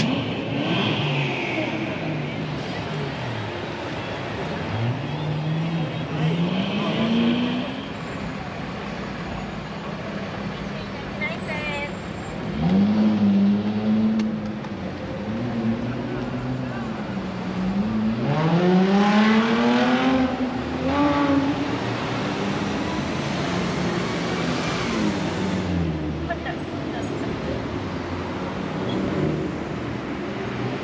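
Street traffic with car engines accelerating past, each engine rising in pitch through the gears; the loudest pass comes about two-thirds of the way in.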